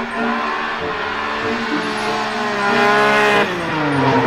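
Drift car (BMW E36) engine held at high revs while sliding, its pitch wavering, climbing about three seconds in and then dropping away near the end. Tyres squeal underneath.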